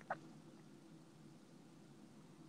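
Near silence: faint steady room tone, with one brief faint sound just after the start.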